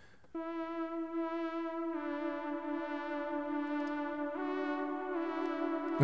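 Omnisphere 'Warm Swell Lead' synth played solo: a bright, layered saw-wave lead with reverb and a little delay, holding long notes. It starts about a third of a second in, steps down in pitch about two seconds in, and steps back up a little past four seconds.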